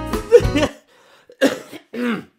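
Live electric guitar music plays back and cuts off abruptly about a third of the way in, then a man coughs twice into his fist.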